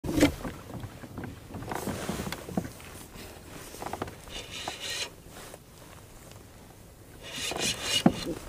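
Kayak and fishing-tackle handling sounds as a hooked fish is played on a spinning reel: scattered knocks and scrapes against the hull, with a short rattling stretch from the reel about four seconds in.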